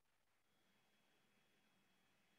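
Near silence: a pause between spoken phrases.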